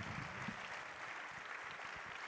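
Audience applauding, a steady, fairly soft patter of many hands.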